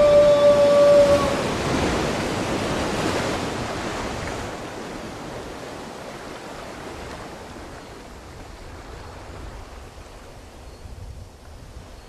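Sea waves, a surf sound effect played through the theatre's speakers. It is loudest at the start and slowly fades away. It opens under a long, steady horn-like tone that stops about a second in.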